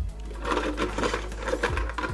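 Hard plastic toy figures clattering against each other and the inside of a clear plastic bucket as a hand rummages among them, a quick run of small clicks and knocks.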